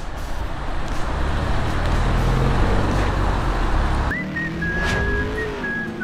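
BMW Z4 sDrive20i roadster's four-cylinder turbo engine and tyres as it drives off: a steady low rumble with road noise. About four seconds in this cuts off and an outro music sting with a high whistle-like note takes over.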